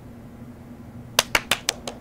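Hand clapping: quick, sharp claps, about six a second, starting a little over a second in after quiet room tone with a steady low hum.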